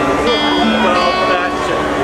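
Acoustic string band playing an instrumental passage: strummed acoustic guitar with held and gliding notes over it.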